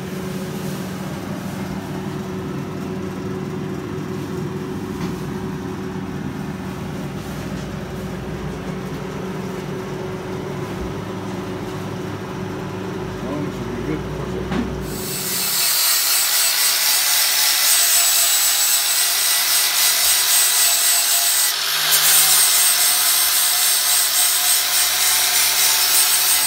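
A steady low hum, then from about halfway through an angle grinder grinding down the welded metal of a gearbox bellhousing: a loud, continuous high grinding noise with a brief dip in the middle.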